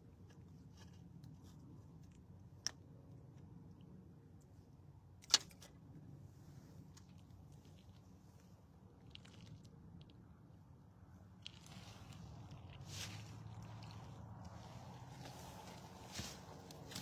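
Faint handling noises: a few scattered sharp clicks, the loudest about five seconds in, then rustling near the end.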